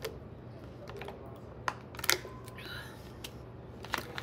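A few sharp clicks and crackles from a thin plastic water bottle being gripped and its cap twisted, as water is drunk to swallow a supplement pill.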